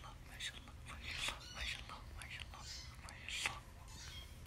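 A person whispering softly: a string of short, breathy, unvoiced sounds coming irregularly.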